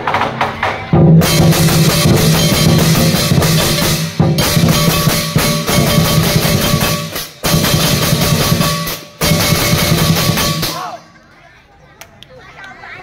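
Lion dance percussion: a large drum beaten hard with crashing hand cymbals. It starts about a second in, breaks off briefly three times, and stops shortly before the end.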